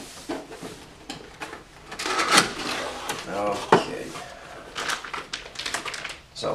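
Cardboard motherboard box being opened by hand: the lid sliding and scraping off, with irregular knocks and taps of cardboard as the board inside is reached for and lifted out.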